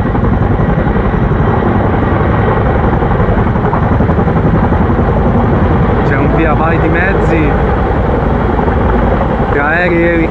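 Tandem-rotor CH-47 Chinook helicopter hovering low over the water and then lifting away with its filled water bucket, its rotors giving a loud, steady, fast beat.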